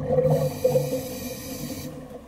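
Scuba regulator breathing heard underwater: a steady hiss of air through the regulator that stops just before the end, over low, wavering bubbling.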